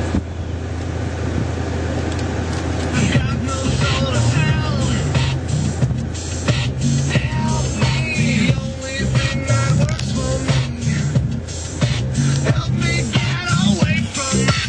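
Music with a beat and vocals, hip-hop-like, playing through the truck's cab stereo speakers and coming in about two and a half seconds in. A steady low hum runs underneath.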